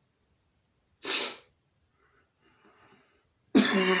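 A man sneezes once, short and sharp, about a second in, then breathes faintly. Near the end he breaks into a loud laugh and a cough.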